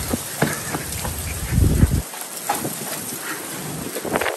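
Steady rain falling during a thunderstorm, with scattered small ticks. A loud low rumble fills the first two seconds and stops abruptly about two seconds in.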